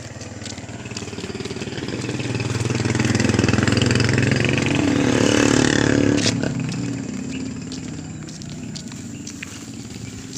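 A motor vehicle passes close by on the road, its engine sound swelling over a few seconds, loudest midway, then dropping away and fading.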